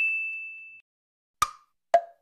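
A clear, high ding rings out and fades away within the first second. After a short silence, two sharp wood-block knocks come about half a second apart, the first higher than the second, starting a steady percussion beat.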